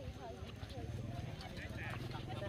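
Indistinct background voices of people talking, with a few light clicks or knocks and a steady low rumble underneath.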